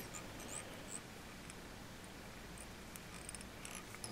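Quiet room tone with a few faint ticks and rustles of fingers handling a fly and its tying thread at the vise.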